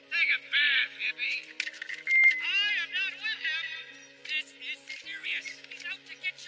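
Film soundtrack music with held low notes that shift pitch a few times, under a busy run of quick, high-pitched squeaky calls that rise and fall.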